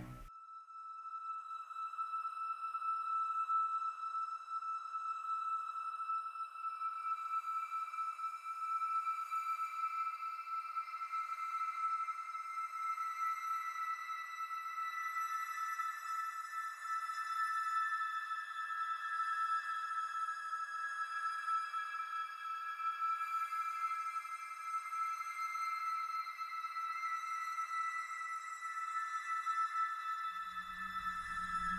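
Eerie horror film-score drone: a steady high sustained tone, with further high tones fading in above it after several seconds and shifting slowly.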